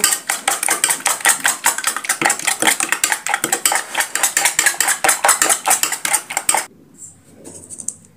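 A metal fork beating an egg in a ceramic bowl, the tines clicking rapidly against the bowl several times a second. It stops abruptly near the end.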